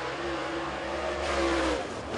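Dirt super late model race car's Vic Hill–built V8 engine running at speed around the track, its note steady, then falling off just before the end.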